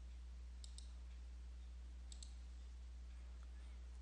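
Computer mouse clicks, two quick pairs about a second and a half apart, opening a software drop-down menu and picking an option, over a faint steady low hum.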